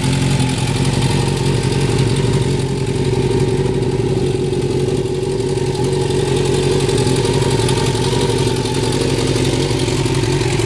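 1987 Honda CBR600F Hurricane's inline four-cylinder engine idling steadily.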